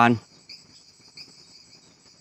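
Faint field crickets chirping steadily, a high shrill trill with a regular pulse about three times a second, as night ambience.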